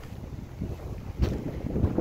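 Wind buffeting a handheld phone's microphone outdoors: an uneven low rumbling noise with no clear tone.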